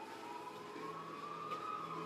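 A faint siren-like wailing tone that rises slowly and then falls, over a low steady hum.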